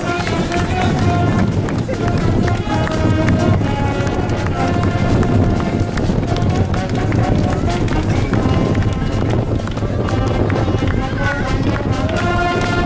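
An outdoor wind band playing sustained brass chords, with a crowd talking over it.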